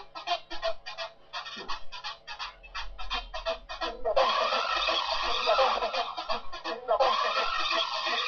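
A flock of birds calling, with rapid short honking calls several times a second at first. From about four seconds in the calls grow louder and overlap densely.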